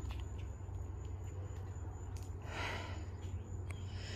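A person's soft breath or sniff about two and a half seconds in, over a steady low rumble.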